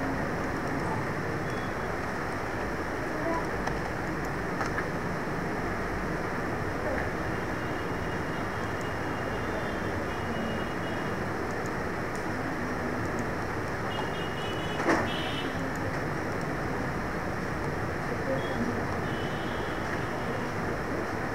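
Steady background hiss of room or street noise, with faint voices now and then and a single sharp click about fifteen seconds in.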